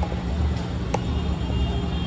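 A steady low rumble, with a single faint click about a second in.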